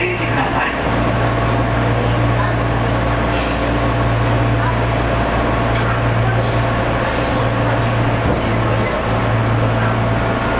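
Interior of a Meitetsu electric train starting to pull slowly out of the platform: a steady low electrical hum from the train's equipment, with a short hiss of released air about three seconds in.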